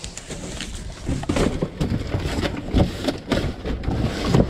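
A flattened cardboard box being swung open and folded into shape by hand: irregular scraping, flapping and knocking of cardboard that gets busier about a second in.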